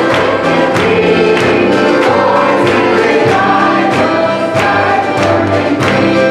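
A woman singing a gospel song into a microphone over accompaniment with a steady beat.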